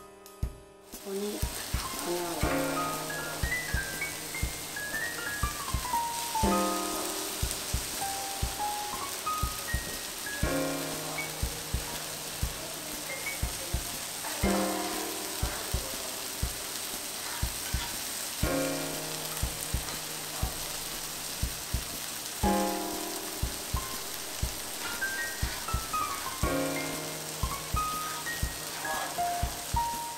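Background music with a steady beat, over the steady sizzle of monjayaki batter and cabbage frying on a hot teppan griddle. The sizzle comes in about a second in.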